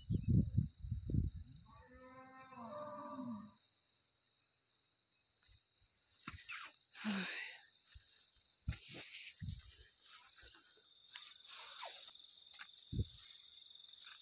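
Quiet rural ambience with a steady high-pitched insect drone. Over it come bumps and rustles from a hand-held phone being carried while walking, heaviest in the first second or so. A short hummed, voice-like note follows about two seconds in.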